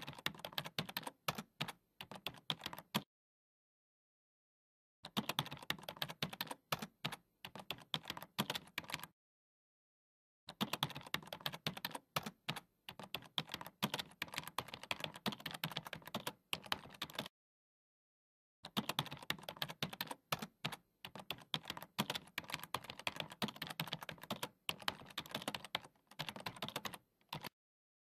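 Keyboard typing sound effect: rapid clicking keystrokes in four runs of a few seconds each, cut by dead-silent gaps, as text is typed out letter by letter.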